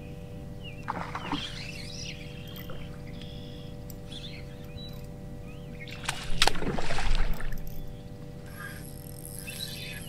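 Outdoor ambience on a fishing boat: a steady low rumble with a faint steady hum, and birds chirping now and then. A louder, noisy burst comes a little after six seconds.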